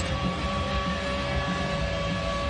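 Steady hockey-arena background noise with a faint held tone running through it.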